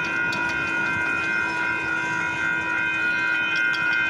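Railroad grade-crossing warning bell ringing steadily while the crossing is activated with the gates down, signalling an approaching train.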